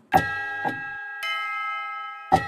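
Bell-like chimes struck twice in quick succession and left ringing, with a further cluster of higher chime tones joining partway through and ringing on, as a scene-change sound cue.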